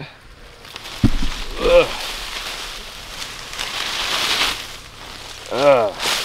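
Leafy tree branch being pulled down and shaken, its leaves rustling and swishing, with a single thump about a second in. Short voiced sounds come just after the thump and again near the end.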